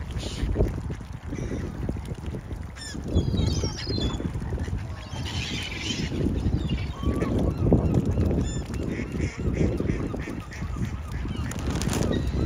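Waterfowl calling several times, including a quick run of short calls near the end, over a low rumble of wind on the microphone.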